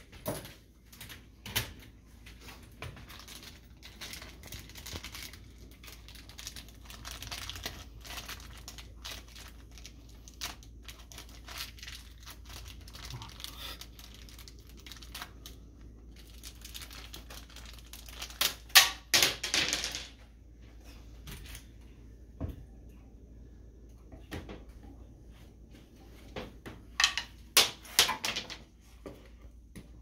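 Hand-work noises from cabinet hardware being handled: a steady run of small clicks and knocks with plastic packaging crinkling, and louder rustling bursts about two-thirds of the way through and again near the end.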